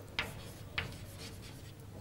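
Chalk writing on a blackboard: two short, sharp chalk taps in the first second, with faint scratching strokes between them as an equation is written.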